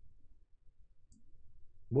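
Quiet room tone with a single faint click a little past halfway, and a man's voice starting right at the end.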